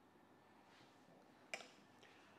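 Near silence: room tone, with one faint, short click about one and a half seconds in.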